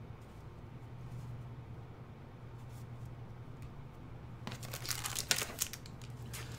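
A faint steady low hum, then from about four and a half seconds in, the crinkling of a booster pack's foil wrapper being handled and torn open.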